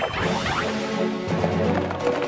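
A cartoon crash effect of rock breaking, sudden at the start and trailing off in falling sweeps, over background music.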